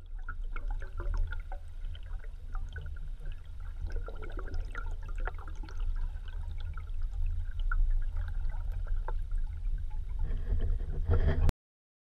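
Sound picked up by an underwater camera in a lake: a muffled low water rumble with scattered faint clicks and ticks, cutting off suddenly near the end.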